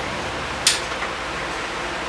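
Steady room hiss, with one short, sharp high click about two-thirds of a second in.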